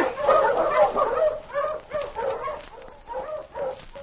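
Team of sled dogs barking and yelping as the sled is mushed off, a string of quick barks that fades away as the team moves off.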